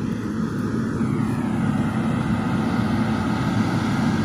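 Tractor engine running steadily at a constant pitch, getting a little louder about a second in.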